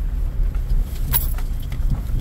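Steady low rumble inside a car's cabin as it drives slowly, engine and road noise, with two brief clicks, one about a second in and one near the end.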